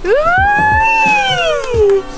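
A person's long drawn-out "wheee" while going down a playground slide, one continuous call that rises in pitch, holds, and slides back down over about two seconds.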